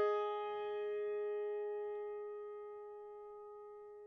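Grand piano chord, struck just before, left ringing and slowly dying away with no further notes: the player has stopped mid-passage, having forgotten what comes next.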